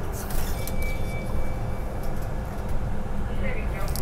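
Inside a city bus under way: steady low engine and road rumble, with a faint thin tone about half a second in.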